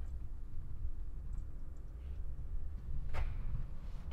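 Quiet, steady low rumble of room noise, with one short knock about three seconds in.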